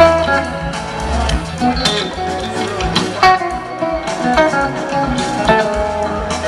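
Live rock band playing, with an electric guitar picking quick lead lines over bass and drums, heard from within the crowd through a small camcorder microphone.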